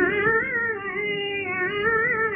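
A woman's voice singing a long held note in a Hindustani raga. It slides up into the note at the start, then sways gently in pitch.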